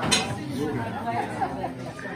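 Chatter of a seated group, several people talking at once in low, overlapping voices.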